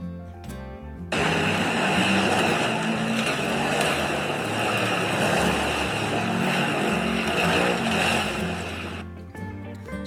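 AI-generated soundtrack of an off-road buggy driving through mud: engine noise and splashing start suddenly about a second in and run for about eight seconds. Background music with a steady bass plays underneath.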